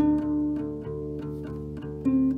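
Instrumental passage of a lo-fi acoustic guitar song: notes picked in a steady pattern, about three or four a second, each left ringing over low bass notes.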